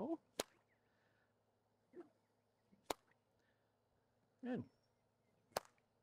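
Stock whip cracked three times, one sharp crack about every two and a half seconds.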